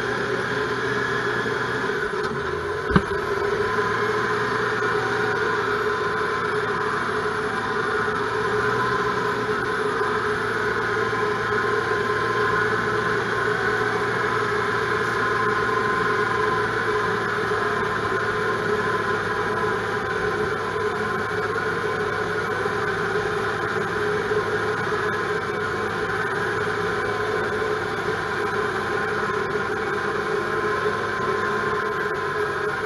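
Cummins 6BTA six-cylinder turbo diesel of a 1988 Franklin 170 cable skidder running at a steady throttle, heard from inside the open, screened cab. A single sharp knock about three seconds in.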